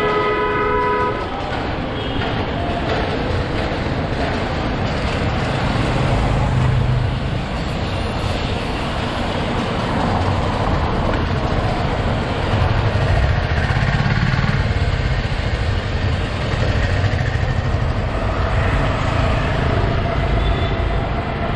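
Steady road and traffic noise with heavy low rumble, heard from a moving bicycle. A vehicle horn sounds briefly in the first second.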